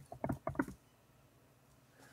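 A quick run of keystrokes on a computer keyboard, about seven clicks in under a second.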